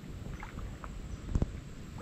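Faint water sounds around a sea kayak sitting still on calm water, with a few small ticks and one light knock about one and a half seconds in.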